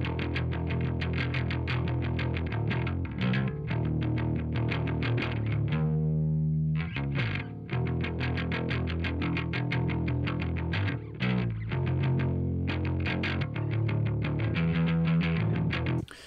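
Recorded electric bass line played back through Amplitube 5's simulated Marshall 800 amp and Marshall 800 cab, a cleanish tone that is only just breaking up. Fast, evenly picked notes, with one note held for about a second around six seconds in.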